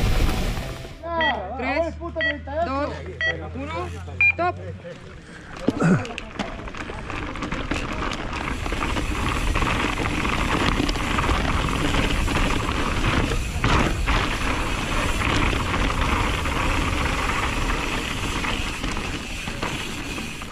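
Race timer beeping a start countdown, about one short beep a second with a higher final beep, over nearby voices. Then a Radon Swoop 170 mountain bike is ridden fast down a dirt trail: steady tyre and wind noise with the rattle of the bike over rough ground.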